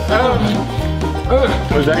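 Background music with plucked strings over a steady bass line.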